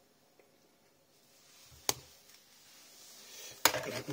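Handling sounds of a plastic battery-powered soap dispenser: a single sharp click about two seconds in, then a rising rustle and a louder knock near the end as it is picked up. No motor sound comes from it, because one battery is in the wrong way round.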